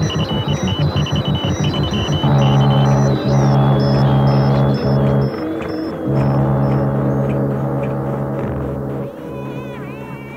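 Electronic drone music from a 1980s home-taped recording. A low tone pulses about five times a second, then about two seconds in gives way to a sustained low drone that breaks off briefly twice. Rows of short high beeps repeat over it, and the sound grows quieter near the end.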